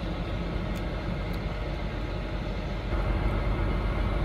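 Steady low rumble of a semi-truck heard from inside its cab, growing a little louder about three seconds in.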